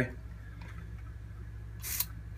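Hand pump spray bottle giving one short hiss of spray near the end, over a steady low hum.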